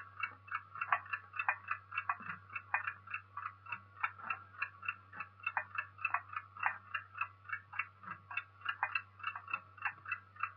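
A clock ticking rapidly and evenly, about four ticks a second, over a faint steady low hum.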